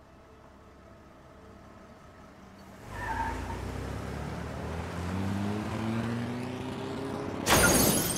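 A Jeep Wrangler's engine accelerating hard, its pitch rising steadily, then a loud crash about seven and a half seconds in as the Jeep slams into a tree.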